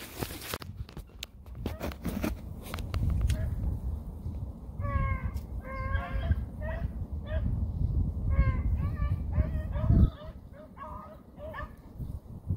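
Hounds baying in short, repeated calls, about two a second, beginning about five seconds in: a pack of rabbit dogs, typically beagles, giving tongue on a rabbit's track. Rustling and handling noise before they start, and a low bump about ten seconds in.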